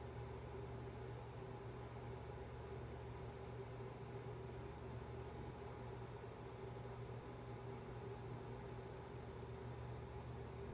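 Faint, steady low hum of room tone with no distinct events.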